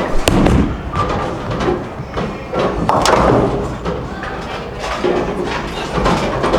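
Bowling alley lane sounds: bowling balls rumbling down the lanes and pins crashing, with a sharp hit about a quarter second in and a louder crash about three seconds in.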